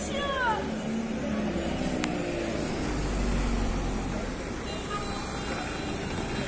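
Busy city street: a motor vehicle's engine running close by, its low rumble swelling about three seconds in, over passers-by talking and general traffic hiss.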